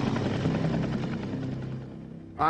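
Sikorsky UH-60 Black Hawk helicopter flying overhead, its rotor chop dying away over the two seconds.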